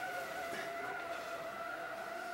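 Steady electrical whine made of several even, unchanging tones, from a room light that is making too much noise.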